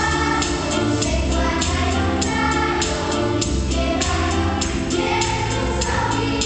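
Children's choir singing a Polish nativity song over a musical accompaniment with a steady percussion beat and bass.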